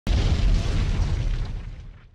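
Explosion sound effect: a sudden deep boom with a rumbling tail that dies away over about two seconds.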